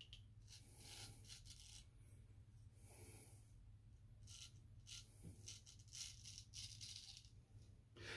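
Faint scraping of a straight razor cutting through lathered beard stubble in a few slow strokes, with short pauses between them. The freshly honed edge passes smoothly, without catching.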